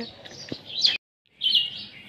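Small birds chirping in short, high calls, with a brief complete gap in the sound about halfway through.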